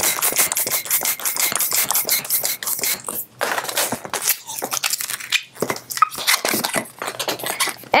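Inflated latex twisting balloon squeaking and rubbing under the hands as it is bent and stretched: a dense, uneven run of short squeaks.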